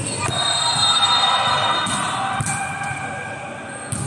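A volleyball thudding a few times on the court or on hands in a large echoing hall. For about two seconds early on, a steady, many-toned ringing sound sits over it and is the loudest part.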